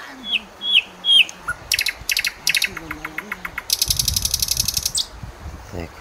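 Wild birds calling: three short, sharp whistled notes in quick succession, then fast rattling trills that run on for a few seconds.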